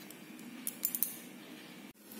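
A hand working chicken pieces through a thick yogurt marinade in a steel bowl: faint wet squishing with a few light clicks a little under a second in, cutting off suddenly near the end.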